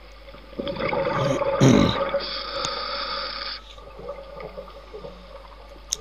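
Scuba diver breathing underwater through a regulator: a gurgling rush of exhaled bubbles, then a steady hiss of about a second and a half as air is drawn from the regulator, then a quieter stretch.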